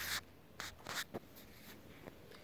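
Faint, short scratchy taps and rubs on a touchscreen, a few strokes in quick succession, the first the loudest.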